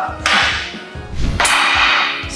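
Two whip-crack sound effects added in editing: a short one just after the start and a sharper crack about a second and a half in, each dying away quickly.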